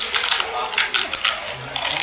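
Close-up chewing of a mouthful of food, with irregular wet clicks and crackles from the mouth.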